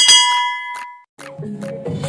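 Subscribe-button sound effect: a click and a bright bell-like ding that rings and fades out within about a second. After a short gap, music with a repeating pattern of low notes starts.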